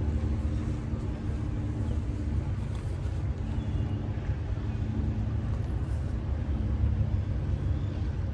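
A boat engine idling steadily: a low rumble with a constant hum over it.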